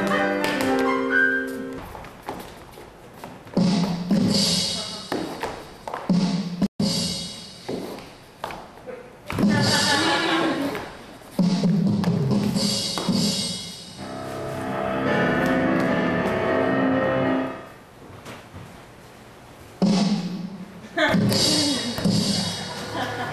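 Piano-led music accompanying a silent-movie-style stage comedy. Several thuds of performers falling and scuffling on the stage floor sound through the music.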